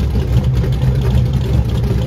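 Drag race cars' engines idling at the starting line, a steady low rumble.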